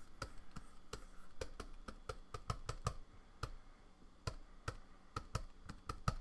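Irregular light clicks and taps from hands working a computer and pen-display setup, several a second over the first three seconds and sparser after.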